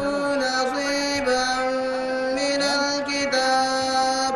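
A single voice chanting in long held melodic notes, moving in small steps between steady pitches, with a melodic, recitation-like delivery.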